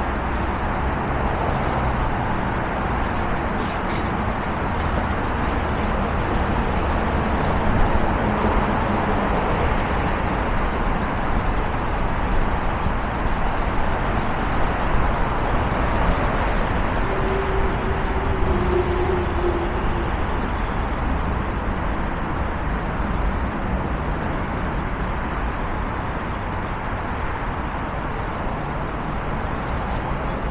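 Steady traffic noise from a multi-lane freeway: the continuous rush of tyres and engines from many cars passing below, with a single car going by close on the road at times.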